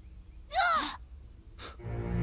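A short, breathy gasp about half a second in. Near the end, background music sets in with held tones over a low drone.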